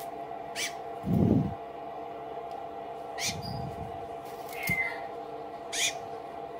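Newly hatching blue-and-gold macaw chick giving three short, rising peeps, a couple of seconds apart, over a steady background hum. The loudest sound is a dull low thump about a second in, with a softer one near the middle, from the hands handling the chick and shell.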